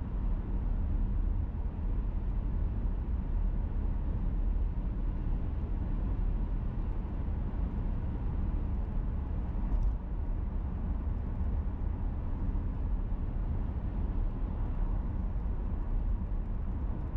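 Steady low rumble of a car driving at road speed, tyre and engine noise heard from inside the cabin, with a brief faint tick about two-thirds of the way through.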